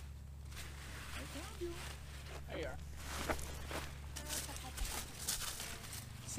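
Cucumber vines rustling, with short irregular knocks and snaps as pickling cucumbers are picked by hand, over a steady low hum. Faint voices come through briefly in the middle.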